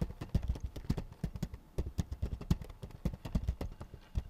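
Typing on a computer keyboard: a quick, irregular run of key clicks with low thumps as the keys bottom out.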